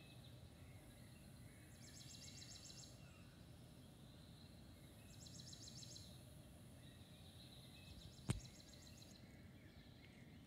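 Faint nature ambience played through a television, with three short spells of high, rapid trilling about two, five and eight seconds in. A single sharp click a little after eight seconds is the loudest sound.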